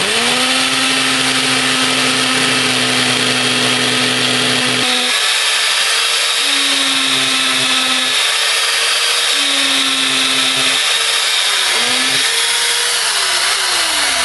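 Ryobi hammer drill with a 3/16-inch masonry bit running continuously as it bores a hole into brick. Its motor pitch is steady for about five seconds, then shifts and wavers up and down as the bit works deeper into the brick.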